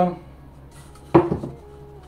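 A single sharp knock about a second in, from a rigid perfume presentation box being handled as its outer cardboard sleeve is slid off.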